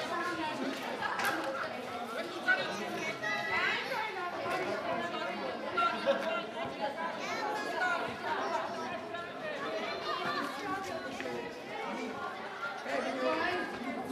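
Spectators' overlapping chatter and calls, adults' and children's voices mixed, with no single clear speaker; a couple of short sharp knocks stand out about two and a half and six seconds in.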